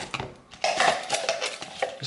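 Metal spoon clinking and scraping against a glass blender jar and a plastic tub while fruit is spooned in and pressed down, a quick run of clicks and scrapes that is busiest from about half a second in.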